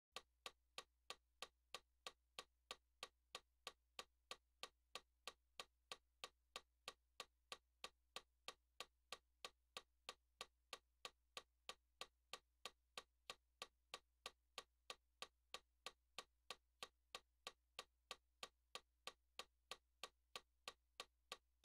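Metronome clicking faintly and evenly, about three clicks a second, with a faint low hum underneath.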